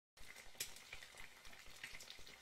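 Faint frying sizzle, an even hiss with many small crackles, as from food cooking in a pan on the stove.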